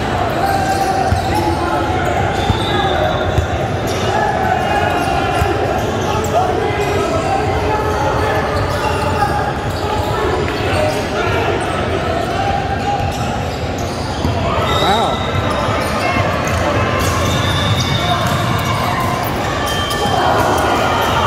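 A basketball bouncing on a hardwood gym floor during play, with players' and spectators' voices carrying through the large, echoing hall.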